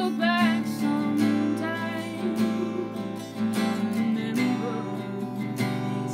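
Steel-string acoustic guitar strummed in steady chords, with a voice singing a few sustained, wavering notes over it near the start and again in short phrases later.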